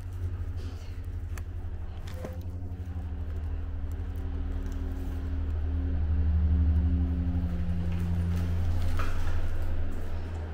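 Low, steady machine hum carrying a few higher steady tones, growing louder about five seconds in and easing near the end, with a few light clicks.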